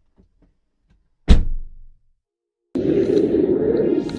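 A single heavy thud with a short decaying tail, an intro sound effect over the title card. About three-quarters of the way in, a steady rushing noise starts abruptly: a snowboard sliding and scraping on packed snow, with wind rumbling on an action camera's microphone.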